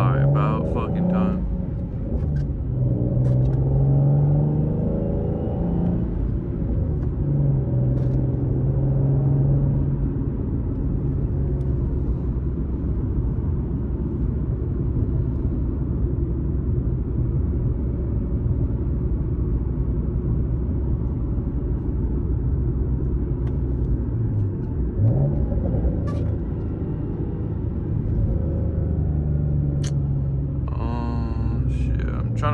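Nissan 370Z's 3.7-litre V6 with an aftermarket loud exhaust, heard from inside the cabin as the car accelerates away, the engine note climbing and dropping several times as it shifts up through the gears, then settling into a steady cruising drone. A brief rise and fall in engine pitch comes near the end.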